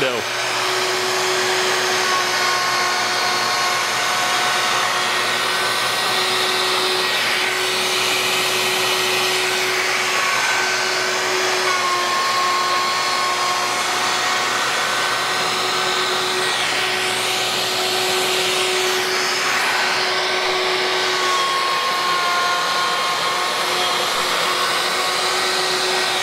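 Festool OF 1400 router with a one-inch Ultra-Shear bit running steadily as it skims and flattens a spalted maple board. The cutting noise swells and fades as the router is pushed back and forth across the board. A dust extractor draws through the hose on the router.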